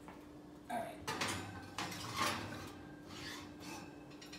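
A glass baking dish sliding and scraping on a metal oven rack as it is pushed into the oven, in several short scrapes.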